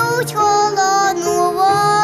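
A young girl singing a melody into a microphone, with instrumental accompaniment.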